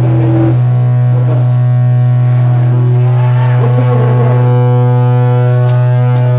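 A loud, steady low drone from the band's amplified stage rig sustains throughout, with fainter wavering pitched tones over it around the middle. A single sharp click sounds near the end.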